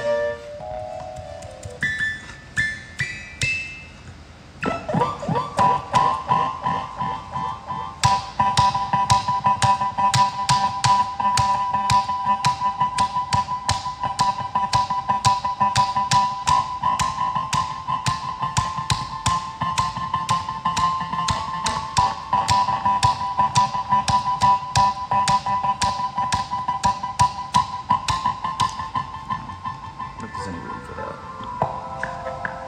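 Electronic music keyboard being played: a few short notes stepping upward, then about five seconds in a long held synth tone that sustains to the end, with a fast, dense stream of short sharp notes layered over it from about eight seconds in.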